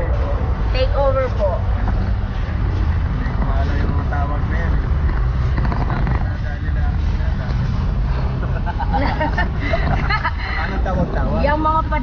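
Steady low rumble of a car driving, heard inside the cabin, with voices coming and going over it, mostly near the start and toward the end.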